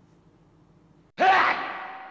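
Faint room tone, then about a second in a sudden, loud metallic hit with a ringing tone that fades away over a couple of seconds: an added editing sound effect marking the cut to a question card.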